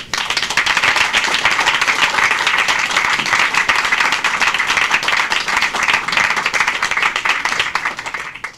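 Audience applauding steadily: a dense patter of many hands clapping.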